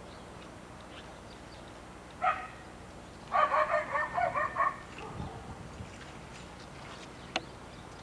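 A dog barking: one bark a little over two seconds in, then a quick run of about six barks about a second later. A single sharp click follows near the end.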